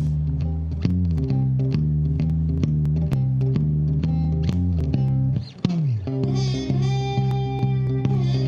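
Solo electric guitar played fingerstyle, with a low bass line and a melody sounding together. About five and a half seconds in, a bottleneck slide glides down into a low note, followed by ringing high notes.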